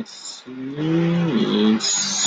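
A man's voice slowly sounding out typing-drill words: an "s" hiss, then one long drawn-out vowel of about a second that falls in pitch, and another "s" hiss near the end.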